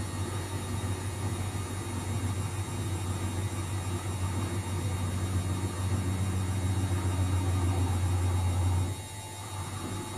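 Luxor WM 1042 front-loading washing machine tumbling its drum with water inside, a steady low motor hum that swells slightly, then cuts off suddenly near the end.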